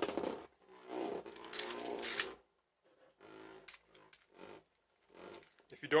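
A Beyblade Burst top spinning on the floor of a plastic stadium, whirring in patches: a steadier spell about a second in, then shorter, fainter bits with quiet gaps between.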